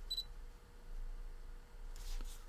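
A single short, high electronic beep right at the start, over a low rumble of handling noise and a faint steady hum.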